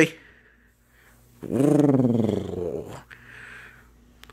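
A low dinosaur growl for the toy T-Rex, one call of about a second and a half that starts about a second and a half in, rises then falls in pitch, and fades out.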